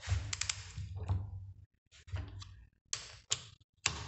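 Ratcheting torque wrench clicking in short irregular runs as nuts on a motorcycle cylinder head are tightened slowly by hand.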